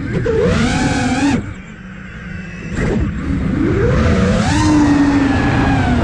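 Five-inch FPV freestyle quadcopter's brushless motors and propellers, heard from the drone's onboard camera: a whine that rises and falls with the throttle. It is loud for the first second and a half, drops off, punches briefly near three seconds, then builds again and holds high through the second half.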